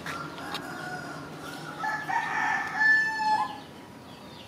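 A rooster crowing: one long drawn-out crow about two seconds in, lasting about a second and a half and ending with a short bend in pitch, after fainter calls in the first second or so.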